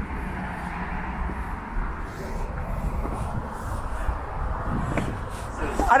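Steady outdoor background noise with a heavy low rumble throughout, and faint indistinct voices in it.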